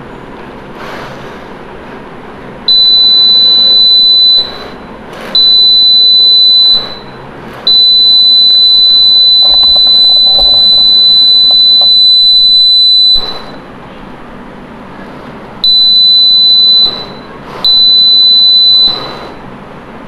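Piezo buzzer on a robot vehicle sounding a loud, steady high-pitched tone five times, on and off in stretches from about one to five seconds, the longest in the middle. It goes off while a metal gear is held under the robot's inductive proximity sensor: a metal-detection alarm.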